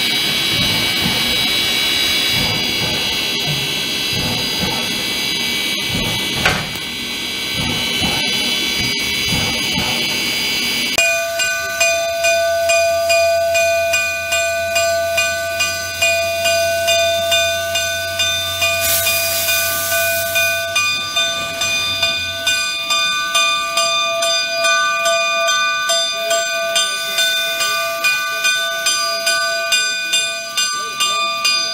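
Baldwin 2-8-2 steam locomotive No. 484 hissing steam for about the first ten seconds, then its bell starts ringing, about two strikes a second, and keeps ringing to the end. A short burst of steam hiss comes about two-thirds of the way through.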